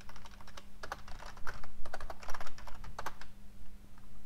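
Typing on a computer keyboard: a quick run of keystrokes that stops about three seconds in.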